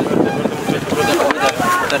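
Several voices talking over one another, with wind buffeting the microphone and a few short sharp clicks.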